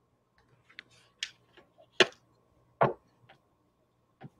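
Small scattered clicks and taps of objects being handled at a desk, with two sharper knocks about two and three seconds in, the first the loudest.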